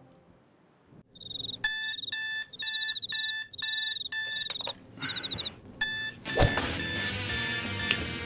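Digital alarm clock beeping in quick repeated bursts, about two a second, stopping about six seconds in. A sharp thump follows, then music.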